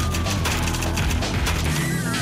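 Title sting of a TV crime-news programme: music over a deep bass drone, filled with rapid sharp cracks and clicks, and a high tone that slides down near the start.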